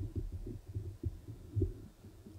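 Soft, irregular, muffled low thumps and rumble close to the microphone, several a second, with no voice.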